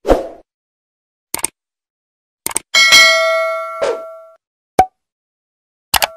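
Animated subscribe end-screen sound effects: a short hit at the start and several sharp clicks, with a bright bell-like ding about three seconds in that rings on for about a second and a half before fading.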